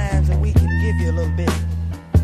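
Soul band playing under a pause in the talk: a steady bass line and drum hits, with a quick upward slide at the start and then a held high note that bends up as it begins and lasts about a second and a half.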